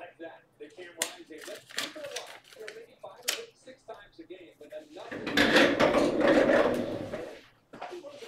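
Indistinct background talk, then about five seconds in a loud rush of noise lasting about two seconds.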